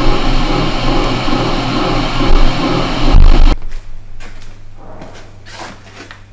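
A Beaver slotting attachment on a milling machine, running at its lowest speed: a steady motor hum with a rhythmic churn as the ram strokes up and down about twice a second. It stops abruptly with a low thump about three and a half seconds in, leaving a faint hum.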